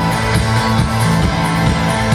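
Rock band playing live through a large PA: electric guitar and bass guitar over a repeating low bass line, loud and continuous.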